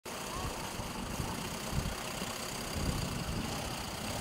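Small sedan, a Fiat Siena, driving slowly over a muddy, stone-strewn street: engine running at low speed with uneven low rumbling from the tyres on the rough surface.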